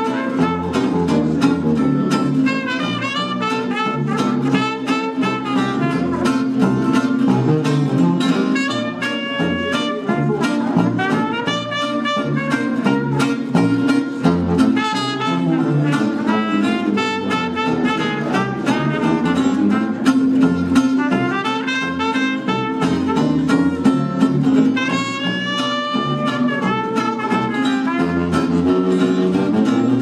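Live small-group jazz: a trumpet plays the melody over a steadily strummed acoustic guitar and a bass saxophone playing the bass line.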